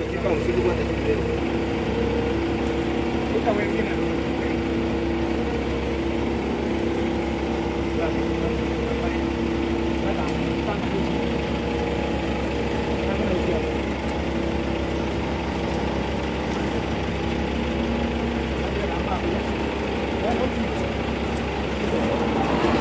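Vehicle engine idling steadily, a low rumble under several held tones that fade about two-thirds of the way through, with people's voices murmuring under it.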